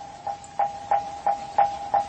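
Background Buddhist chant music in a pause between sung phrases: a struck percussion instrument keeps a steady beat of about three knocks a second, each knock with a short ringing tone.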